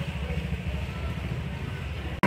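Go-kart's small engine running at low speed with a rapid, even putter.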